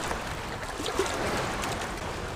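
Choppy water lapping and sloshing close to the microphone, held just above the surface, with a few small splashes.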